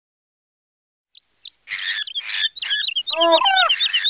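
High-pitched bird-like chirps that start after about a second of silence and then repeat rapidly and evenly, joined by short noisy swishes and, about three seconds in, a brief pitched sound that slides down.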